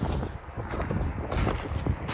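Footsteps crunching on gravel, irregular and uneven, with wind rumbling on the microphone.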